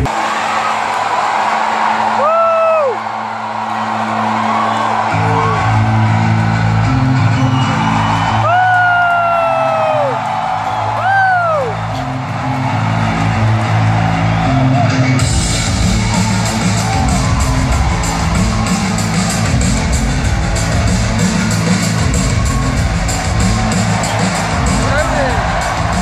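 Arena PA music playing over a loud crowd, recorded on a phone from the stands, as a wrestler's entrance begins in the darkened arena. Fans let out several long whoops in the first dozen seconds. About fifteen seconds in, the music and the crowd noise get fuller and louder.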